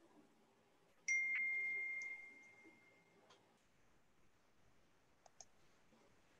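A single high chime rings out about a second in and fades away over about two seconds. A few faint clicks follow near the end.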